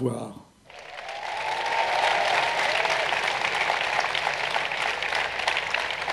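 Large audience applauding: the clapping starts about a second in, swells quickly and then holds steady.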